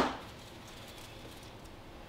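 Quiet room tone: a faint, steady, even hiss with no distinct sounds.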